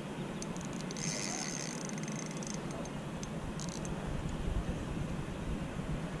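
A spinning reel being cranked while a hooked trout is played, with a brief high whirring hiss about a second in and a few sharp clicks over steady outdoor noise.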